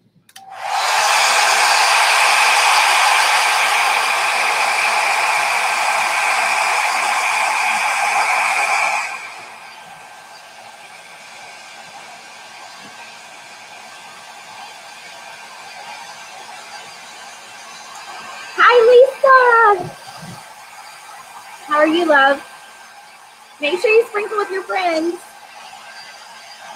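Handheld hair dryer blowing on a freshly painted wooden cutout to dry the paint: a loud, steady rush for about nine seconds, then a much quieter rush. A few short vocal sounds and a laugh come near the end.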